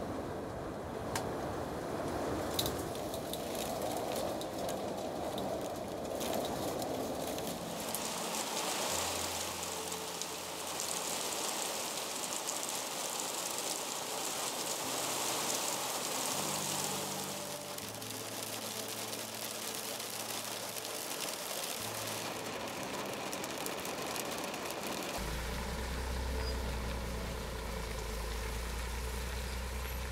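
Heavy rain mixed with hail falling and drumming on a clear corrugated plastic roof, a continuous hiss that grows harsher and brighter for several seconds in the middle. Near the end a deep, steady low rumble joins in under it.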